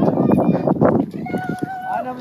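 A camel walking through soft sand, heard from its back: irregular soft thuds and jostling, densest in the first second. In the second half a person's voice holds a steady note.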